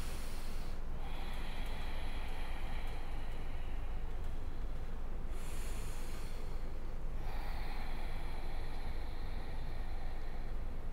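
Ujjayi breathing: slow, audible breaths drawn in and out through the nose with a throaty hiss. There are two long breaths, the first lasting about four seconds from a second in and the next starting about seven seconds in.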